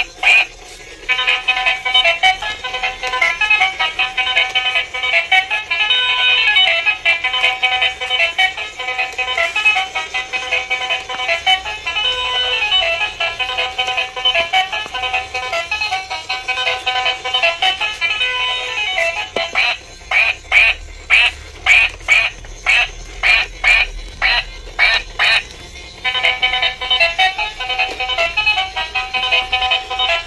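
Battery-operated light-up dancing duck toy playing its built-in electronic tune. About twenty seconds in the tune gives way for some six seconds to a run of short quack sounds, about two a second, and then the tune starts again.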